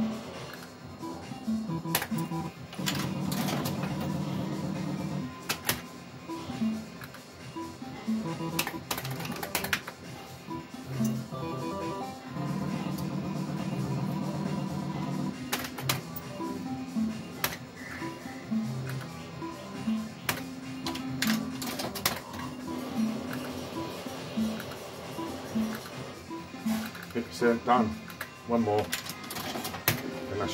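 Cloud 999 fruit machine playing its electronic bleeps and jingles, with sharp clicks from the reels and buttons. Twice there is a longer run of rapid repeated tones as a win counts up into the bank.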